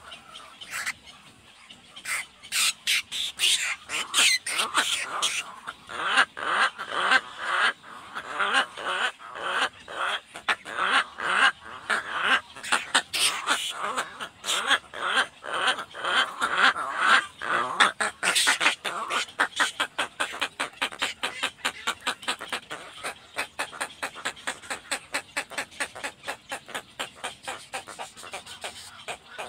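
Egret nestlings giving rapid, harsh begging calls at a parent, several short calls a second. The calls are loudest through the middle and settle into a quieter, more even series near the end.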